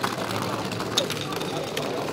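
Rip-cord-launched Beyraiderz toy battle vehicles buzzing and rattling across a plastic tabletop battle arena, with a few sharp clicks of the toys knocking into things, one clear click about a second in.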